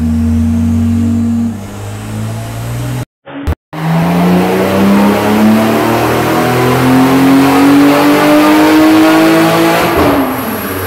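Porsche 996 Turbo's twin-turbo flat-six on a chassis dyno, running through a stainless exhaust with no catalytic converters. After a drop in revs and a short cut-out in the sound about three seconds in, the engine makes a dyno pull, its pitch rising steadily for about six seconds before it lifts off right at the end.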